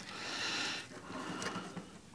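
A cured expanding-foam aquarium background scraping against the glass walls of a small tank as it is pushed into place: a dry scrape lasting about a second, then fainter rubbing.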